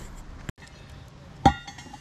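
A steel slab-lifting tool clanks once on the concrete deck about a second and a half in, ringing briefly like struck metal.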